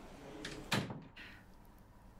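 A door closing: a faint click, then a single thud with a short tail a little under a second in.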